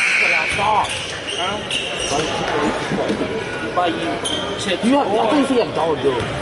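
A basketball being bounced on a hardwood gym floor at the free-throw line, with voices of players and onlookers echoing in the gym. A few short high squeaks cut in, the loudest right at the start.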